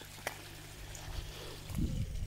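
Faint steady trickle of water from a garden pond's filter outflow over a low steady hum, with a single click about a quarter second in and a low rumble near the end.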